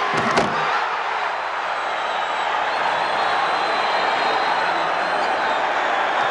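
A slam dunk: one sharp bang of the ball and hands on the rim just after the start, followed by a packed arena crowd cheering steadily.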